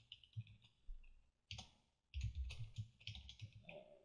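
Faint clicks of a computer keyboard and mouse: a single click about a second and a half in, then a run of quick key taps and clicks through the second half.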